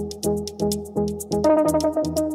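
Electronic music: a pulsing synth bass and a fast, steady run of hi-hat ticks under held synth chords. A brighter, higher chord comes in about one and a half seconds in.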